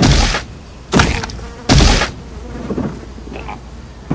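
Three heavy hit sound effects about a second apart, each a sudden impact that fades away over about half a second, laid in as gore blows.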